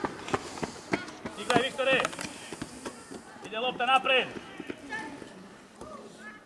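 Short high-pitched shouts of voices around a youth football pitch, in two bursts about one and a half and four seconds in, with scattered sharp knocks in between.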